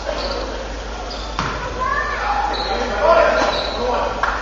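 Basketball gym sound: people chattering, short high sneaker squeaks on the hardwood court, and a basketball bouncing on the floor once, sharply, about a second and a half in.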